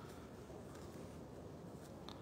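Faint, steady background hiss with a few soft, brief ticks; no distinct sound event.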